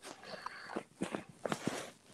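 Faint footsteps on a kitchen floor, a few soft steps in the second half.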